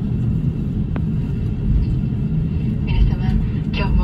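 Steady low rumble of a jetliner's cabin while the plane taxis on the ground after landing, with a single sharp click about a second in. A cabin announcement voice starts near the end.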